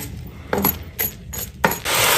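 Small pebbles clattering as a flatbread baked on a bed of hot gravel is lifted and the stones slide off it. A few separate clicks come first, then a dense rattle of pouring gravel near the end.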